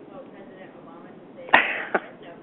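Handling noise on a handheld microphone: a sudden loud knock about one and a half seconds in that dies away over a few tenths of a second, then a second, shorter knock near the end.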